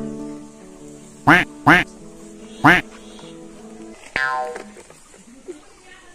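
Three loud, short duck quacks, the first two close together and the third about a second later, over soft background music. A further nasal call comes about four seconds in.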